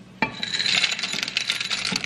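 Dry pasta shapes poured from a bowl into a pot: one sharp click just after the start, then a dense rattling patter of many small pieces lasting well over a second.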